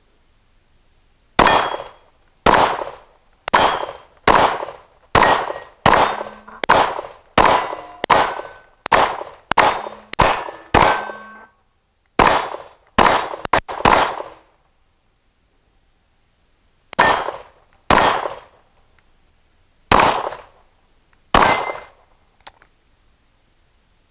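Handgun shots outdoors. A string of about sixteen shots comes roughly half a second apart, then a quick cluster of about five, then four slower shots near the end. Several shots are followed by the ringing of steel targets being hit.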